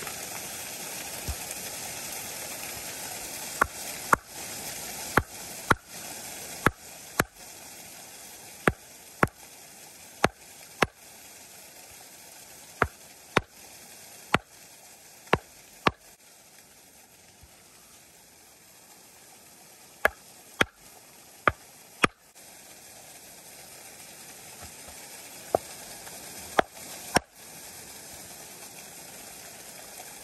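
Club hammer striking a stone nodule resting on sand: about twenty sharp blows, often in quick pairs with pauses between, to split it open for the ammonite inside. A steady rush of running water sounds behind the blows.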